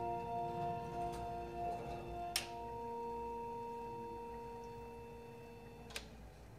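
Final notes of the Quartet robotic kinetic mallet instrument ringing out as a chord of steady tones that slowly fade. One more light mallet strike comes about two and a half seconds in, and a short click comes at the very end.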